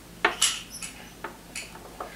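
Light clicks and taps of small metal objects on a wooden tabletop as a rifle cartridge is set down and a flattened, spent bullet is picked up. There are about half a dozen taps, the sharpest about a quarter second in.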